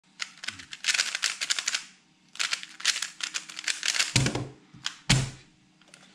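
A 3x3 speedcube turned fast, in two bursts of rapid plastic clicking, followed by two dull thumps about four and five seconds in.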